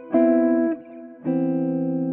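Hollow-body electric jazz guitar with a clean tone playing three-note Cmaj7 chord voicings in inversion: one chord struck just after the start and damped after about half a second, then another struck a little past a second in that rings on.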